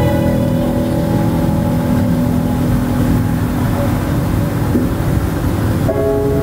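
Film soundtrack: held music notes fading away over a steady low rumble.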